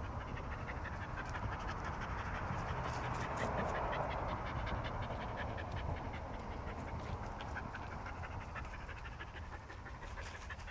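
A dog panting steadily, the breathing loudest a few seconds in and easing off near the end.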